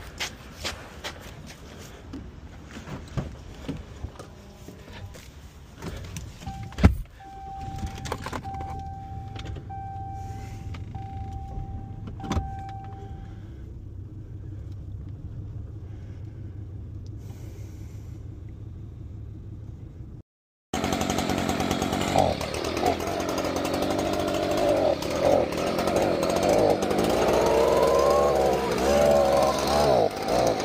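A pickup truck door shuts with a thud about seven seconds in, then the running engine is heard from inside the cab, with a warning chime beeping repeatedly for several seconds. After a cut about two-thirds of the way through, a gas-powered leaf blower runs loud, its pitch rising and falling as it is revved.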